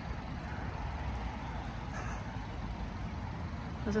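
Steady low rumble of outdoor background noise with no distinct events.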